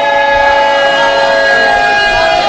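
Several men's voices holding long, steady notes together through a microphone and loudspeakers, in a loud, drawn-out call.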